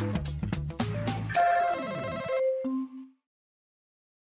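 Closing theme music gives way, a little over a second in, to a short bright electronic jingle of held chime-like notes stepping down in pitch. The jingle cuts off about three seconds in.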